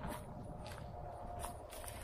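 Faint outdoor background noise: a steady low rumble with a few soft clicks and rustles.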